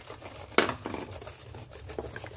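Wire whisk stirring and scraping against a stainless steel bowl, mixing tapioca flour into coconut milk and water, in a quick run of small clicks and scrapes with one sharp clink about half a second in.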